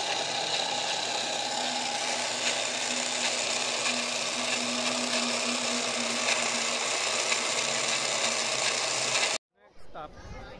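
Edited-in intro sound effect: a steady, harsh rasping noise with a faint low hum under it. It cuts off suddenly about a second before the end.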